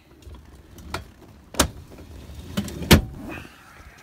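Low rumbling handling noise inside a vehicle's cabin with four sharp knocks, the loudest about three seconds in.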